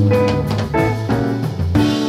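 Live jazz fusion band playing: a Gibson ES-335 semi-hollow electric guitar over Nord Stage keyboard, electric bass and drum kit, with notes changing quickly over a steady bass line and drum hits.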